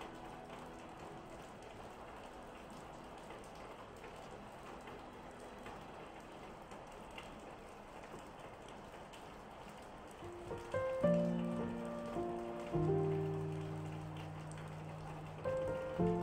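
Steady rain falling, with calm solo piano over it: the last notes of a phrase die away at the start, rain is heard alone for several seconds, then the piano comes back in with soft chords and a melody about ten seconds in.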